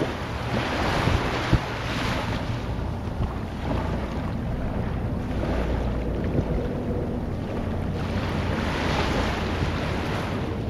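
Wind and water noise: a steady low rumble under a rushing hiss that swells about a second in and again near the end, with a few light knocks.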